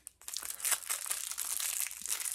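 An individually wrapped chocolate being unwrapped by hand: the wrapper crinkles continuously, starting about a quarter second in.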